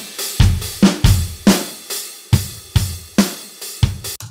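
Sampled drum kit from XLN Audio's Addictive Drums playing a steady beat at 140 bpm, with kick, snare, hi-hat and cymbals, played back from exported audio stems. It stops just after the end.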